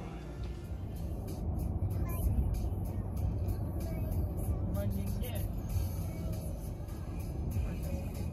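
A car driving at highway speed, heard from inside the cabin: a steady low rumble of road and engine noise.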